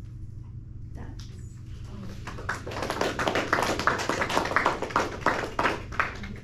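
A small audience clapping, starting about two seconds in and growing louder, over a steady low room hum.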